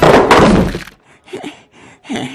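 A heavy impact with a crash, loud and sudden, dying away within about a second. Faint voice sounds follow.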